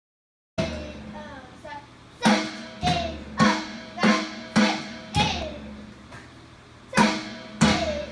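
A song with singing starts about half a second in, with a child drumming along on an electronic drum kit; from about two seconds in, heavy drum hits land roughly every 0.6 seconds.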